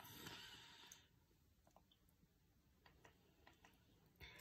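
Near silence with a faint rustle or breath, then several faint, irregular clicks: the power button of an electric silicone facial cleansing brush being pressed repeatedly while the brush fails to switch on, its battery low.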